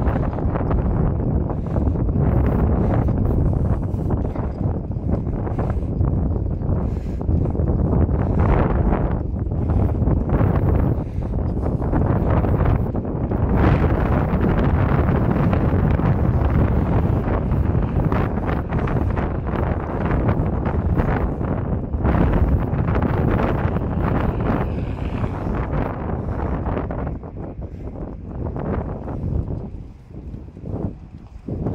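Strong wind buffeting a phone's microphone in gusts, a loud rumbling rush that eases a little near the end.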